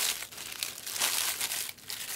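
Crinkly plastic and foil wrappers of trading card packs being handled, an irregular crackling rustle.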